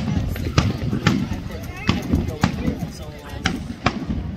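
Aerial fireworks shells bursting overhead: a run of about seven sharp bangs over four seconds, over a continuous low rumble.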